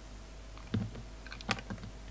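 Snap-off utility knife blade cutting into a carved bar of soap, giving crisp clicks: one a little under a second in, then a quick run of them around a second and a half in.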